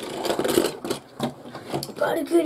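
A Beyblade Burst top spinning on a plastic stadium floor with a rattling whir, followed in the second half by a few sharp clicks and knocks as the top is handled.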